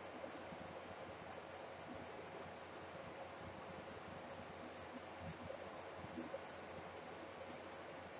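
Faint steady hiss of room tone, with no distinct sound.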